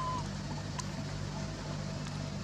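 A steady low hum like a distant motor, with one short high chirp right at the start and a few faint ticks.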